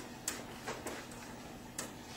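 A handful of light, irregularly spaced clicks and ticks from small objects being handled on a table, over quiet room tone.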